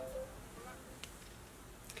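Quiet pause: faint steady room noise, with one faint click about a second in.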